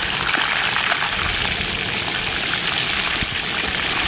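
Hot oil sizzling steadily in a disco cowboy wok over a propane burner, a dense, even crackle of deep frying.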